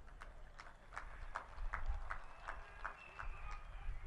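Faint, irregular clicks, about ten of them, over a low rumble.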